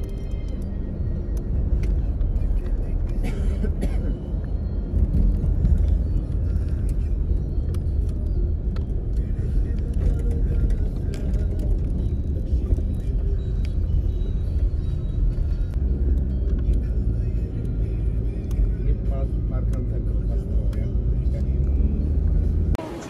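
Steady low rumble of a car driving, heard from inside the cabin, with faint music and voices under it.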